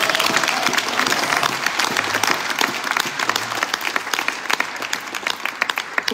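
Audience applauding in dense, rapid clapping that thins out toward the end.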